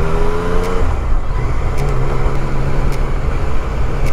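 Yamaha Tracer 900's three-cylinder engine running as the motorcycle rides off, its pitch rising slightly for about the first second. Then it changes abruptly to a steady low engine drone under wind and road noise.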